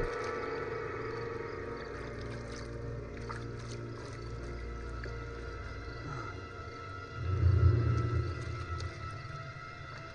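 Low, ominous horror-film score drone of held tones over a deep hum, with a swell of low rumble about seven seconds in.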